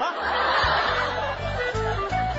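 A man and a woman laughing hard and breathily, trailing off over the first second and a half. A light comic music cue comes in underneath, with bass notes and short plucked notes.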